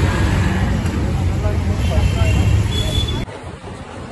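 Road traffic on a busy city street: a steady rumble of engines, with scattered voices nearby. It drops away suddenly about three seconds in to a much quieter background.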